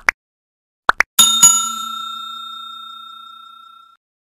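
Two quick double clicks of a button-tap sound effect, then a bell ding struck twice in quick succession, its ringing tone fading out slowly over about two and a half seconds: a subscribe-button notification-bell sound effect.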